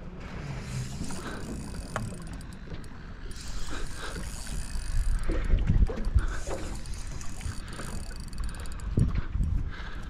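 Water lapping and knocking against the hull of a small aluminium boat, with a few dull low thumps around the middle and again near the end.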